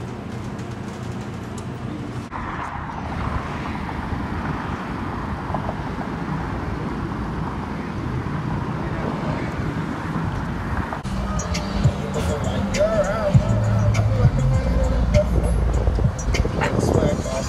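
Road traffic noise: a steady rushing of passing cars along a busy street, with voices and pitched sounds joining in the last few seconds.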